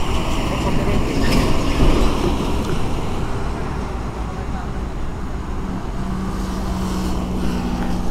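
A truck passing on the highway: a rush of road and engine noise that is loudest in the first two seconds, then eases to a steady traffic noise. A low steady hum comes in near the end.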